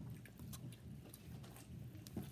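Soft chewing and mouth clicks of someone eating fried chicken close to the microphone, over a faint low rumble from a washing machine running with an unevenly loaded drum of pillows.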